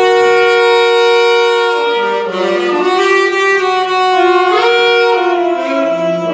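Saxophones playing together in harmony: a chord held for about two seconds, then the parts move through changing notes.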